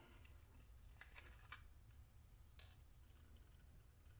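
Near silence with a few faint, light clicks about one, one and a half and two and a half seconds in: small handling sounds at a digital pocket scale as a gold nugget is set on its pan and weighed.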